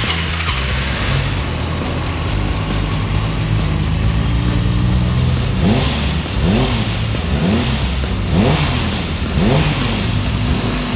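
Supersport motorcycle engine just started after nearly two years of storage, idling steadily, then blipped on the throttle five times about a second apart, each rev rising and falling quickly. It runs crisply with no rattles, a sign that it has come through the storage in good health.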